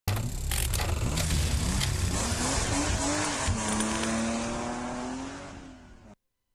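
Title-sequence sound effects of a car, dense and rumbling, cut by several sharp hits in the first few seconds. Then comes a held, slightly wavering pitched tone that fades away near the end.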